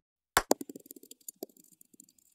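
A small hard object dropped onto a hard surface, two sharp hits and then a run of bounces with a faint ring, coming faster and fading away.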